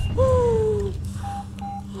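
A drawn-out 'oh' falling in pitch, then two short, even electronic beeps in the second half: a hospital patient monitor beeping, over a steady low hum.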